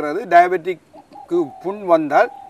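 A bird calling behind a man's speech: a single steady note, heard briefly about a second in and held for about a second near the end.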